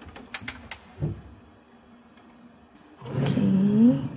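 A wooden drawer pulled open on its runners about three seconds in: a loud sliding rumble with a rising squeal that ends as the drawer stops. Before it come a few light clicks and a soft knock from hands on the wooden cabinet.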